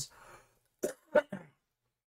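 A man coughing or clearing his throat: three short, quick coughs about a second in.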